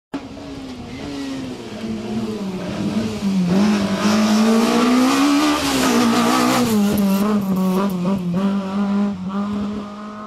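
Fiat Cinquecento autoslalom race car's engine running at high revs, its pitch rising and falling as it works through the cone slalom. It is loudest about midway as the car passes close by, then holds steady revs as it pulls away.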